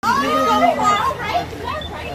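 Excited voices of a group of people. One high voice calls out, held for about the first second, then mixed chatter.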